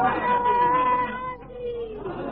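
A voice holding a long drawn-out vowel on a steady pitch, which sags slightly and fades toward the end, heard on a narrow-band old tape recording.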